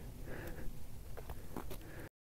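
Faint outdoor ambience: a low, uneven rumble of wind on the microphone, with a few soft clicks in the second half.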